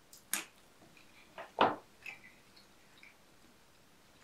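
Wet mouth sounds of a man eating a bite of sausage with mustard: a few short smacks and chewing noises, the loudest about one and a half seconds in.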